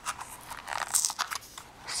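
Fingers and fingernails handling a cardboard face-powder box close to the microphone: crinkly rustling with light clicks and scratches, busiest about a second in.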